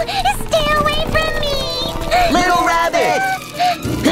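A high-pitched cartoon voice making wordless, wavering cries over background music.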